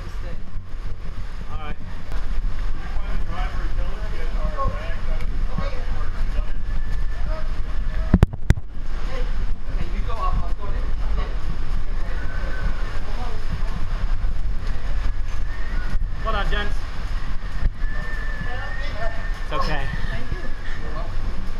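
Typhoon wind rumbling steadily, with people's voices at intervals and a single sharp knock about eight seconds in.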